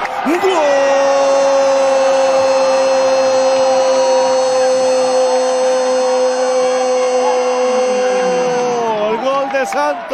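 A Spanish-language football commentator's drawn-out goal call: one shout held on a steady pitch for about eight seconds, dropping away near the end into shorter excited cries.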